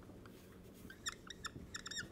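Dry-erase marker squeaking on a whiteboard as numbers and a division sign are written: a quick run of short, high squeaks starting about a second in.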